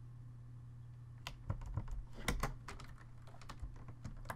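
Computer keyboard typing: a quick run of keystrokes starting about a second in, over a steady low hum.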